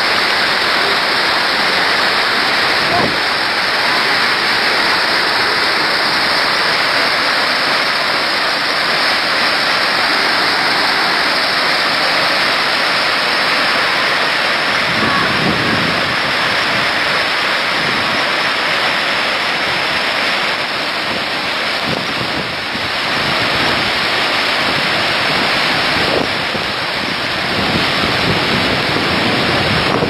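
Fast mountain river rapids rushing: loud, steady white-water noise.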